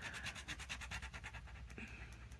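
Uni Posca paint marker rubbing across paper in quick back-and-forth strokes as an area is coloured in.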